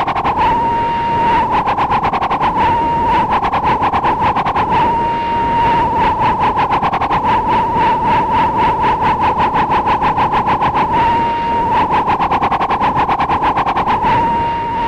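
A loud, high electronic alarm tone beeping rapidly and continuously, its loudness swelling and fading.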